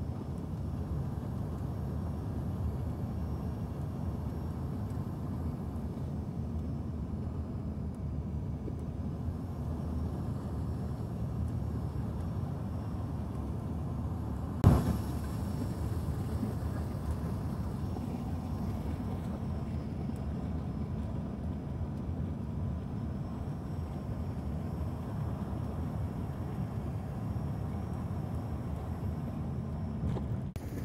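Steady low rumble of airliner cabin noise during the final approach to landing, with a single sharp knock about halfway through.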